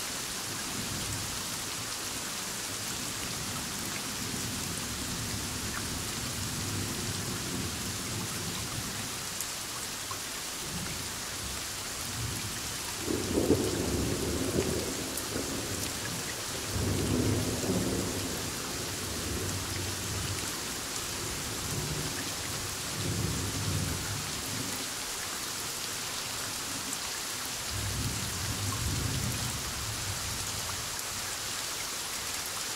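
Thunderstorm: steady rain with several rolls of thunder, the loudest about halfway through and weaker rumbles after it.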